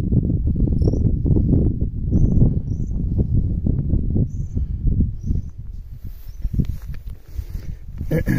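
Rumbling, gusting wind noise on the microphone outdoors, strongest in the first six seconds and easing toward the end, with a few short high chirps in the first half.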